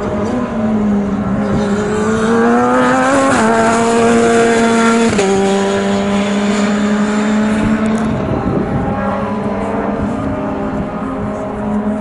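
Single-seater racing car's engine accelerating hard, its pitch climbing and dropping sharply at two upshifts about three and a half and five seconds in, then holding and slowly fading as the car draws away.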